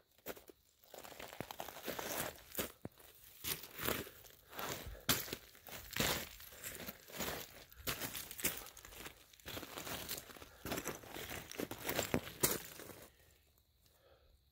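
Footsteps crunching irregularly over loose, broken rock fragments on a slope, stopping about a second before the end.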